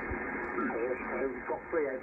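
HF transceiver's speaker playing 40-metre lower-sideband audio: steady band hiss with a faint, narrow-sounding voice coming through from about halfway in, as the receiver is tuned up the band.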